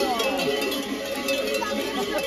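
Many cowbells clanking together as a herd of grey Podolica cattle walks, a dense, continuous jangle of overlapping bell tones. These are the large festive bells hung on the cows' wooden collars.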